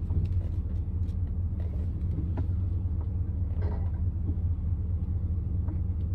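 Roadtrek camper van's engine idling while stopped, heard from inside the cab as a steady low rumble, with a few faint ticks.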